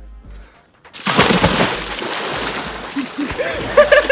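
A man jumping into cold pool water: a loud splash about a second in, water churning as he thrashes, and his shouts near the end.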